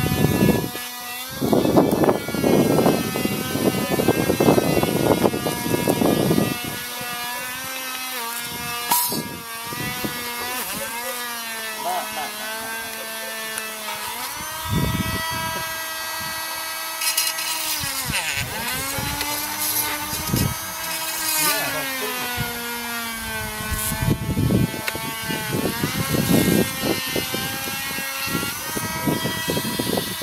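Small high-speed rotary tool running with a steady whine that sags in pitch when the bit is loaded, with rough bursts of grinding as it cuts away the plastic moulding of a vacuum-cleaner HEPA filter.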